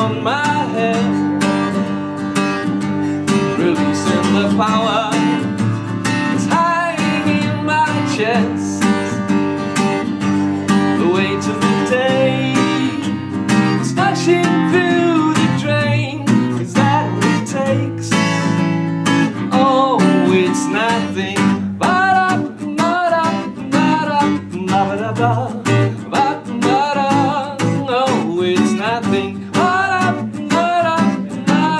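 Acoustic guitar strummed steadily, with a man's voice singing over it in rising and falling phrases.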